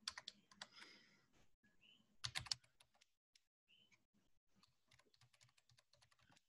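Faint keystrokes on a computer keyboard: a few taps near the start, a quick run of typing about two seconds in, then scattered light clicks.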